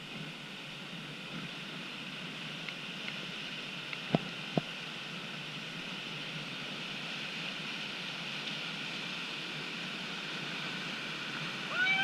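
Churning whitewater rapids in a concrete channel: a steady rush of water that grows slightly louder. Two sharp clicks come about four seconds in, and a voice calls out near the end.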